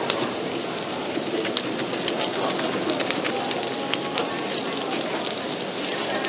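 Food sizzling as it cooks: a steady hiss with scattered sharp crackling pops.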